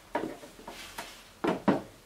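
Knocks and rubbing of a shotgun being handled and set down, with two sharper knocks in the second half.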